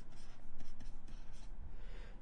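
Stylus writing on a tablet: quiet strokes of handwriting as numbers are written out.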